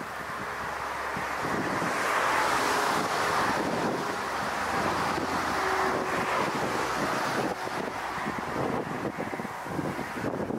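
Airbus A380's four jet engines running as the airliner touches down and rolls out, a broad rushing noise that builds over the first two seconds and eases a little near the end, mixed with gusty wind buffeting the microphone.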